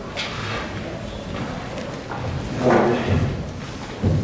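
Stage changeover noise in a hall: shuffling, scattered knocks and thumps of chairs and music stands being moved, under the murmur of voices, which swells briefly late on.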